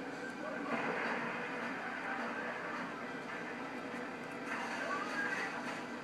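Small Chihuahua-type dog growling steadily.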